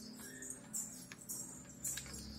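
Light metallic jingling, short shakes about every half second, over a faint steady low hum.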